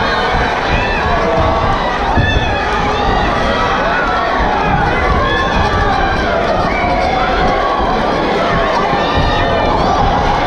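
Boxing crowd shouting and cheering without a break, many voices overlapping into a steady loud din.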